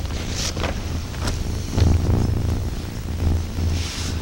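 Steady low hum from the meeting-room recording, with a few brief rustles of paper being handled.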